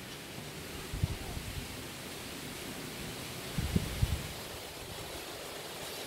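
Steady outdoor hiss with low rumbles of wind buffeting the phone's microphone, once about a second in and again near the middle.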